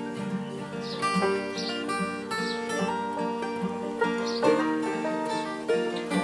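Live bluegrass band playing an instrumental passage on acoustic guitars, mandolin and banjo: picked and strummed notes in a steady rhythm, with no singing.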